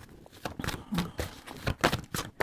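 A deck of oracle cards being shuffled by hand: a run of quick, irregular card snaps and taps.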